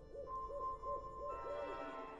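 Faint background music bed between narrated lines: a held high tone and a soft, repeating wavering figure, about three or four pulses a second, that fades out partway through.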